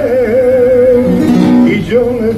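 Flamenco singing: a man holds one long, wavering note over a flamenco guitar for about the first second. Then the guitar's strummed chords come through on their own before the voice comes back in at the end.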